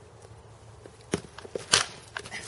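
A quick run of sharp knocks and scuffs from two people sparring with practice swords, their footwork and blade or body contact, starting about halfway in, the loudest just before the end.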